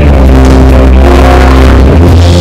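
Live rock band playing loud, with electric guitar holding sustained notes over heavy bass; the held notes shift pitch a couple of times.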